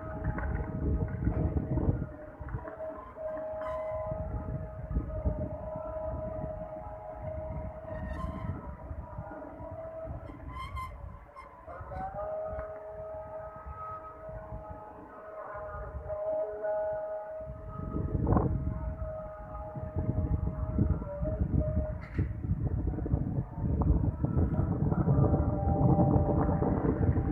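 Fajr call to prayer (azan) sung by a muezzin over a mosque loudspeaker: long, drawn-out melismatic notes, with a new phrase beginning about twelve seconds in and another near twenty-one seconds. A low rumble runs underneath.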